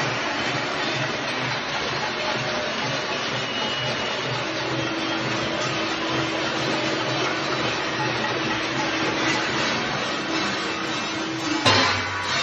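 Continuous din of many people across the apartment towers clapping, beating steel plates and ringing bells, with a steady beat about three times a second and a long held tone for several seconds midway. A sudden loud bang near the end.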